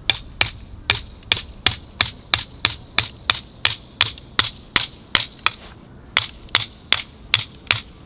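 Wooden mallet striking the back of a hatchet over and over, driving the blade down through a stick of firewood on a chopping block: a steady run of sharp knocks, about two and a half a second.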